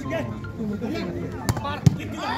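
Hands slapping a volleyball in a rally: two sharp hits about a third of a second apart near the end, the second the louder. Crowd voices run underneath.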